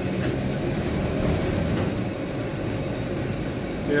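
Car running along a wet road, heard inside the cabin: a steady engine hum under tyre noise, with one brief faint click near the start.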